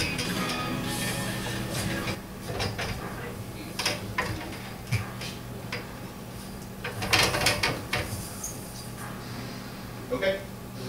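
Music fades out about two seconds in, over a steady low hum. Then scattered knocks and squeaks of hands, feet and skin gripping and sliding on a metal dance pole, with a dense cluster about seven seconds in.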